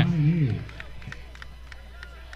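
A man's voice trails off on a word in the first half second. Then comes faint, even outdoor crowd ambience from the stands and sideline, with a few small clicks.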